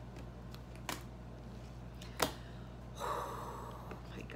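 Tarot cards handled at a stone counter: two sharp clicks a little over a second apart, the second louder, then a rustle about a second long starting about three seconds in, over a steady low hum.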